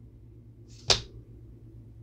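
A single sharp tap about a second in, as a fingertip strikes a playing card lying on a painted board. A faint steady low hum runs underneath.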